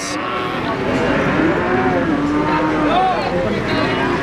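Cattle mooing: one long low call through the middle, over the steady chatter of a crowd.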